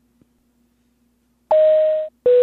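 Near silence with a faint hum, then, about a second and a half in, a steady high tone starts: the first note of an airliner cabin PA chime, the two-note 'ding-dong' that comes before a cabin announcement.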